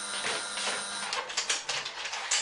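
A front door's lock and latch being worked by hand: a quick run of clicks and rattles in the second half.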